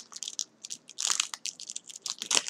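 A Topps Chrome baseball card pack's foil wrapper being torn open and crinkled by hand: a run of irregular sharp crackles.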